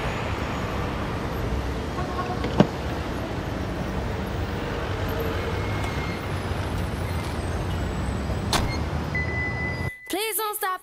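City street ambience with a steady low rumble of traffic and an idling car, broken by one sharp knock about two and a half seconds in and a fainter click near the end.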